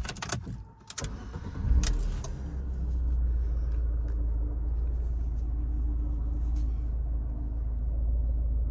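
Abarth 500's 1.4-litre turbocharged four-cylinder starting, heard from inside the cabin: a few clicks, then the engine cranks and fires less than two seconds in with a brief flare of revs, and settles into a steady idle.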